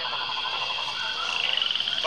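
Frogs croaking outdoors in rapid pulsed calls, with a quicker trill near the end, over a steady high drone.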